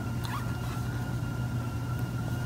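Steady low hum with a thin, faint, high-pitched whine held at one pitch: constant background noise under quiet work with crochet hook and yarn.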